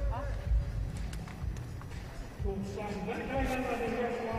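Weightlifting hall ambience: a steady low rumble with a few light knocks, then a voice speaking from about two and a half seconds in.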